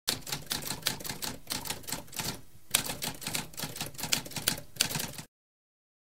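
Typewriter typing: a rapid run of key strikes with a brief pause about two and a half seconds in, stopping suddenly a little after five seconds.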